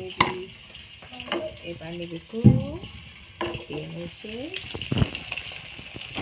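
Food frying in hot oil in a wok: a steady sizzle, with sharp knocks of a utensil against the pan about once a second.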